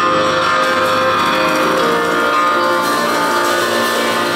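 Two grand pianos playing fast boogie-woogie together, with a drum kit accompanying.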